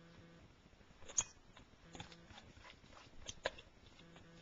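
Faint handling sounds of shredded cheese being scraped out of a plastic bowl into a stainless-steel mixing bowl: a few light clicks and taps of the bowls touching, the sharpest about a second in.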